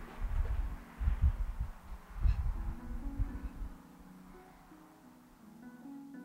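Dull, uneven thumps of footsteps on old wooden floor joists, then soft guitar music comes in about halfway as the thumps stop.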